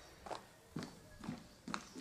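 Footsteps on a hard floor, a steady walking pace of about two steps a second, faint.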